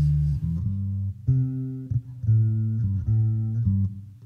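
Electric bass guitar playing a plucked line of separate low notes, each note held briefly with short breaks between them, with no singing.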